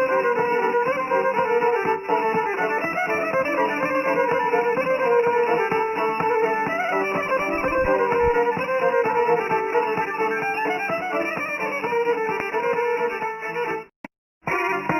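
Serbian izvorna (traditional folk) music: a violin plays the melody over plucked string accompaniment, continuous and steady.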